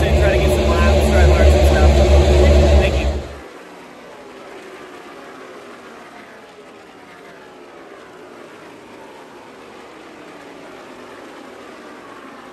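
Stock-car race engines on track, their pitch falling as cars pass, heard quietly. Before that, for the first three seconds, a loud low rumble with a voice, which cuts off suddenly.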